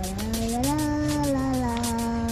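A young girl's voice drawing out a long, wavering sing-song call, its pitch rising and then sliding slowly down, held for about two seconds.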